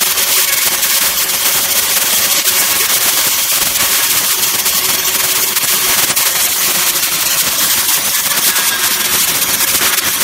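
Metabo KFM 16-15 F bevelling tool milling a bevel along a steel plate edge: a steady, loud, high-pitched cutting noise of the milling head biting the metal, over a faint whine from the electric motor.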